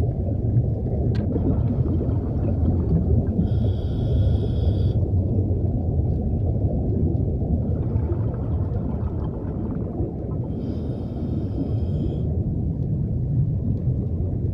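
Underwater recording: a steady low rumble of water and bubbles, broken twice by a hissing scuba-regulator inhalation about seven seconds apart.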